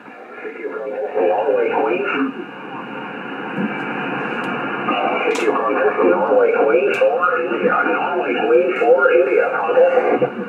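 Single-sideband voices of 20-metre contest stations coming through the speaker of an Icom IC-756PRO II transceiver, thin and cut off above and below like a telephone. They grow louder over the first second or so as the volume is turned up. Two short clicks come about halfway through.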